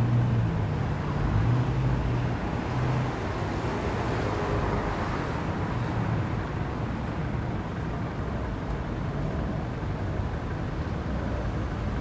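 Road traffic: a vehicle engine running with steady road noise, swelling a little around the middle.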